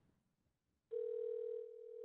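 A steady telephone line tone, starting about a second in after near silence: the phone call to the guest has dropped.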